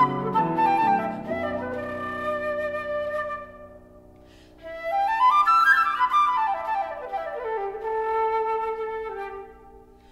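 Concert flute playing with grand piano accompaniment, classical chamber music. The piano holds chords beneath the flute; after a brief soft dip about four seconds in, the flute runs quickly up to a high note and back down, settling on a held lower note that fades near the end.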